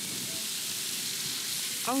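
Eggs, an omelet and hash sizzling steadily as they fry on an electric nonstick griddle.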